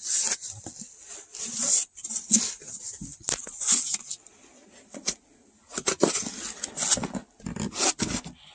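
Foam packing and plastic wrap rubbing, scraping and crinkling in irregular bursts, with a few sharp knocks, as a heavy boxed battery is worked out of a tight-fitting foam insert. The sound drops off for a moment in the middle.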